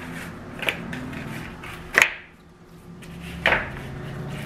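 Raw pork chops being handled and laid into a glass bowl: soft handling noise broken by three sharp knocks against the bowl, the loudest about halfway through.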